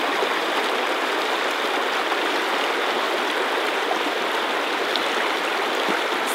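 Shallow stream rushing steadily over rocks, a constant water noise.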